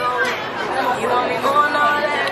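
Chatter of several people talking at once around crowded tables.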